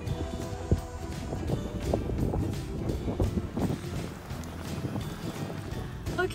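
Background music over wind rumbling on the microphone, with a sharp knock about a second in.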